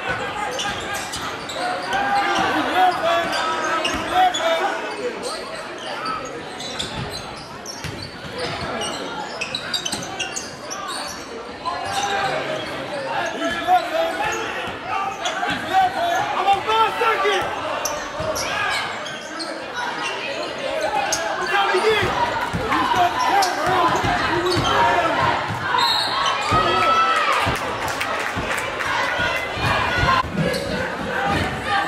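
Basketball dribbled on a hardwood gym floor, its bounces echoing in a large hall over a constant mix of crowd and player voices.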